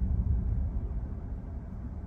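Low road and tyre rumble inside the cabin of a 2018 Tesla Model 3, an electric car with no engine note, dying away as the car brakes to a stop.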